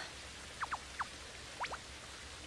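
Small birds chirping: five short, high notes that each fall quickly in pitch, in three small groups, over a faint steady background hiss.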